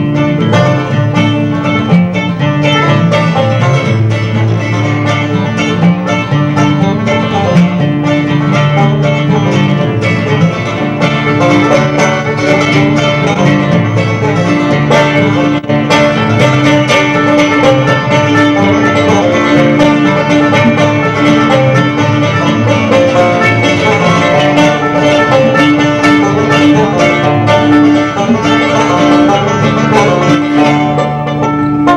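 Live acoustic bluegrass band playing without pause, banjo and acoustic guitar to the fore.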